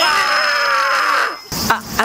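A man's long, loud scream that slides down in pitch and cuts off about a second and a half in, followed by two short, sharp knocks near the end.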